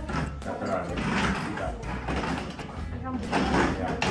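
Indistinct conversational speech from adults talking, over a steady low background rumble.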